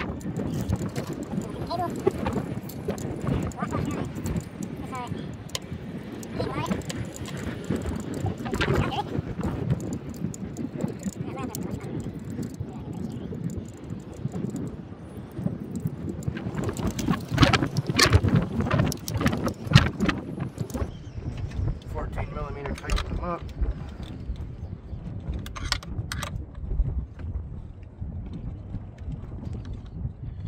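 Small metal battery-terminal hardware (bolts and washers) being handled and fitted, with scattered clicks and clinks, a cluster of sharper ones in the middle. Indistinct voices run underneath.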